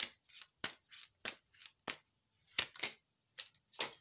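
A tarot card deck being shuffled by hand: about ten short, irregular snaps and clicks of the cards.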